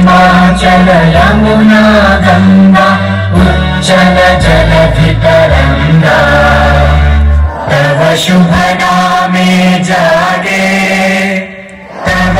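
Recorded choral music, a chorus singing over instrumental backing with sustained bass notes, played loud. It drops away briefly near the end and then resumes.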